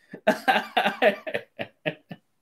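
A man laughing hard in a rapid run of short, breathy bursts, about eight in two seconds.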